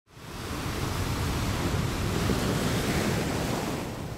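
A steady, surf-like rushing noise from an intro sound effect. It fades in quickly at the start and begins to fade away near the end.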